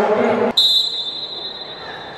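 A single referee's whistle blast about half a second in: a high, steady tone that fades over about a second, signalling the start of a minute's silence.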